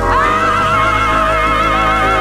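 1970s gospel record playing: a singer slides up into one long high note and holds it with a wide, even vibrato over sustained backing chords.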